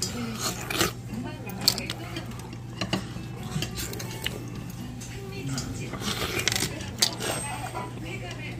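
Metal chopsticks clinking and scraping against stainless steel bowls while noodles are eaten: a scatter of sharp clinks, the loudest about seven seconds in, over a steady low hum and faint background chatter.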